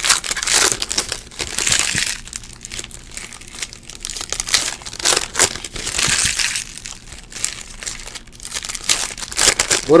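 Foil trading-card pack wrapper crinkling as it is handled and torn open by hand, then a stack of cards being thumbed through, in irregular rustles.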